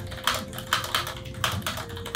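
Typing on a Corsair K100 Air Wireless ultra-thin keyboard with Cherry ultra-low-profile tactile switches: a quick, irregular run of short keystroke clicks.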